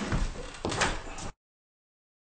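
Short knocks and bumps, then the sound cuts off to dead silence a little over a second in.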